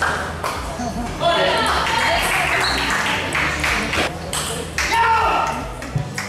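Table tennis rally: the ball clicks sharply off the bats and the table in quick succession, with voices in the hall.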